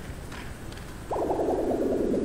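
Cartoon falling sound effect: a loud descending whoosh that begins about a second in and slides down in pitch as the character tumbles down the rabbit hole.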